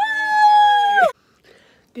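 Two girls' voices shrieking together in one long, high-pitched excited squeal lasting about a second, sliding down in pitch as it stops.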